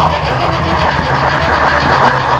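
H0-scale model train running on track, a steady rumble and rattle of wheels on rails with a low motor hum, picked up close by a camera riding on the train.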